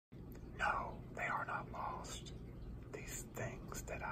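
Close, soft whispered speech.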